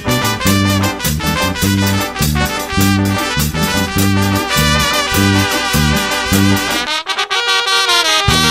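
Live Latin dance band music with a horn section playing over a rhythmic electric bass line. Near the end the bass drops out for about a second, then the band comes back in.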